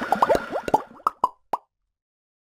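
Cartoon bubble sound effects: a quick run of about eight short plops, each dropping in pitch, ending about a second and a half in.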